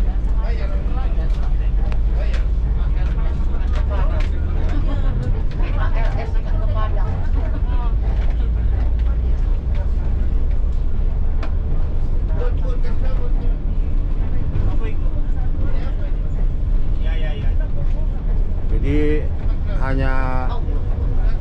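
Diesel engine of a tour bus running as the bus moves slowly, heard from inside the driver's cab as a heavy low rumble that eases a little about halfway through, with indistinct voices in the cab.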